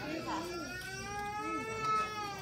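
A person's long drawn-out shout, one held note starting about half a second in, over short bits of other voices.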